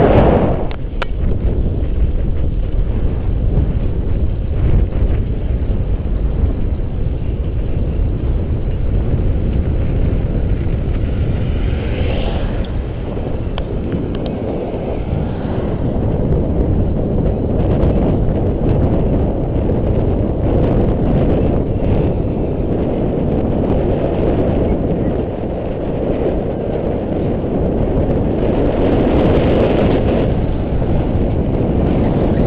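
Wind buffeting the microphone of a camera carried on a moving bicycle: a steady, loud low rumble with small rises and falls.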